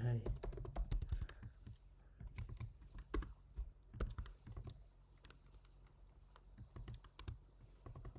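Typing on a computer keyboard: runs of sharp keystrokes in several short bursts, with a lull about five to six and a half seconds in.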